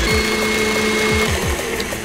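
Electric stand mixer running with its paddle attachment beating a cream cheese dip mixture, its motor giving a steady whine.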